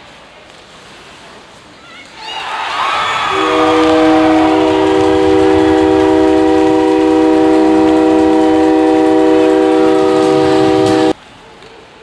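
Ice hockey arena goal horn blasting one long steady chord for about eight seconds, marking a goal, then cutting off suddenly. A crowd cheer swells just before the horn starts.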